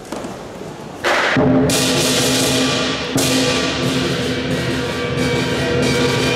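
Southern lion dance percussion: a single drum stroke, then about a second in the lion drum, ringing gong and cymbals come in loud together and keep playing, with fresh cymbal crashes twice.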